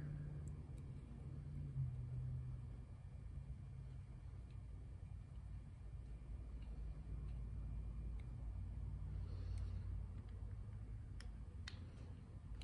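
A few faint clicks and ticks of a small screwdriver working the metering-lever screw into a carburetor body, over a steady low hum.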